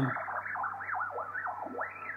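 Warbling tone from a single-sideband receiver tuned to the 35 MHz heterodyne output of a Polytec CLV700/CLV800 laser vibrometer's photodetector. Its pitch swoops up and down about three or four times a second as shifting footsteps shake the laser head relative to its target, so the beat between the measurement and reference beams shifts.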